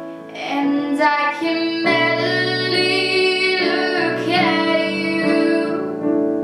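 A teenage girl singing solo in a young female voice over an instrumental accompaniment with guitar.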